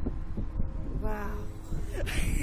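Wind buffeting the ride's onboard microphone as a steady low rumble. About a second in, one of the riders makes a short vocal sound of about half a second.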